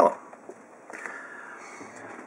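A man's voice finishing a word at the very start, then quiet room noise with a faint hiss that rises slightly about a second in.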